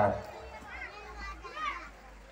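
A loudspeaker announcement ending at the very start, then a few faint, high-pitched children's voices chattering in a crowd.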